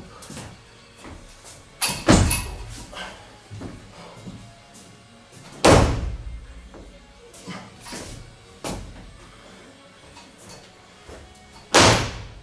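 Heavy thuds on a weightlifting platform as a lifter snatches a barbell, the impacts of feet and bar landing. Three loud thuds come about two, six and twelve seconds in, with a few fainter knocks between.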